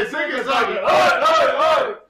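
Several men cheering and shouting together in a loud, overlapping group yell that stops just before the end.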